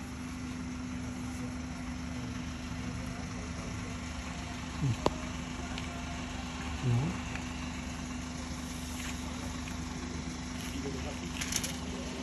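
A steady low hum of an idling vehicle engine. There are two brief voice sounds and a single sharp click about five seconds in.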